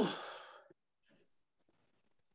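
A voice saying a short "oh" that trails off in a breathy exhale within the first second, followed by near silence.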